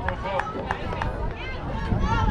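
Indistinct voices of players and spectators at a youth softball game, over a steady low rumble, with a few short sharp clicks in the first second.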